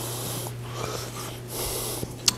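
A man's breathing between phrases: two breaths, one at the start and one near the end, over a steady low electrical hum.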